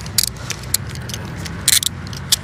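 Handcuffs being put on a man's wrists behind his back: metallic jingling and ratchet clicks, one short burst shortly after the start and a longer one near the end.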